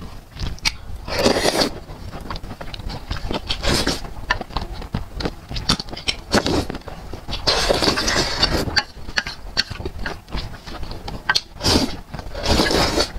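Close-miked mouth sounds of a person eating noodles in a thick sauce: wet slurps and chewing, with many small smacks and clicks. Several longer slurps come about a second in, around the middle to two-thirds mark, and near the end.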